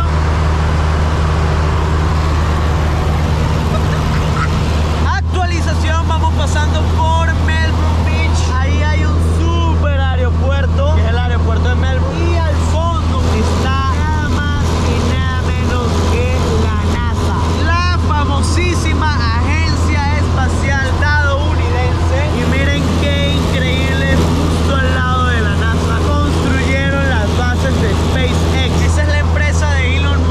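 Steady, loud drone of a single-engine light aircraft's piston engine and propeller at cruise, heard from inside the cabin. From about five seconds in, a voice-like melodic sound runs over the drone.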